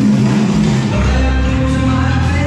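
Swing music playing loudly, with a deeper bass part coming in about a second in.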